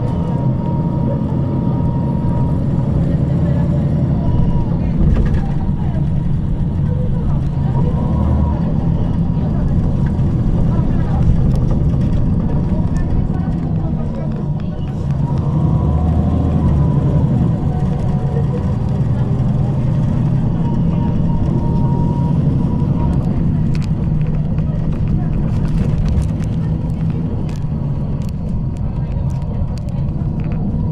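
Interior sound of a 2009 MAN 18.310 HOCL-NL city bus under way: its MAN E2866 compressed-natural-gas engine drones steadily, eases off about halfway through, then picks up again. Passenger voices can be heard in the cabin.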